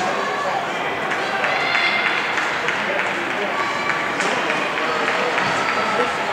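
Crowd of spectators shouting and cheering, many overlapping voices at a steady level in a large indoor fieldhouse.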